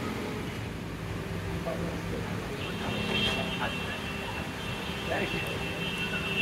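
Café room ambience: a steady low rumble with faint background voices. A high, thin steady tone comes in about two and a half seconds in and sounds on and off.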